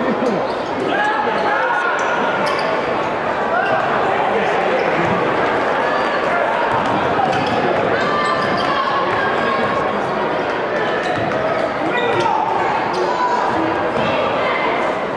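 Basketball game sound in a crowded gymnasium: a steady hum of crowd chatter and calls echoing in the hall, with a ball dribbling on the hardwood court.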